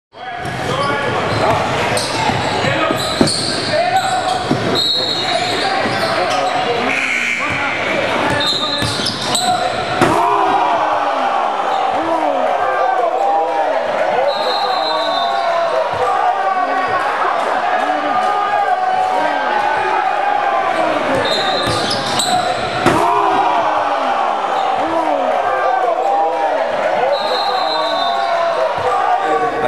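Echoing gym sound of a basketball game: balls bouncing on a hardwood court under the constant chatter and shouts of players and spectators in a large hall, with a couple of sharp bangs.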